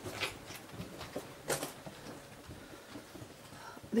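A person breathing close to the microphone in short, noisy breaths, the two loudest a little over a second apart, with faint rustling of movement.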